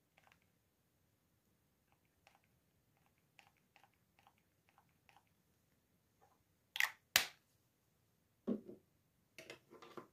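Small clicks and taps of cosmetic containers and a spatula being handled on a tabletop, then two sharp louder clacks close together about seven seconds in and a duller knock a moment later.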